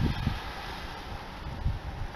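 Wind buffeting the microphone: uneven low rumbling gusts over a faint steady hiss.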